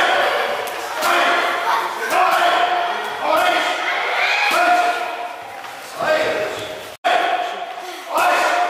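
A voice singing held, sliding notes over a backing track, with the sharp smacks of boxing gloves hitting focus mitts.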